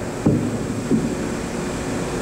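Steady background hum and hiss of an old television interview recording during a pause in the talk, with a short click about a quarter second in.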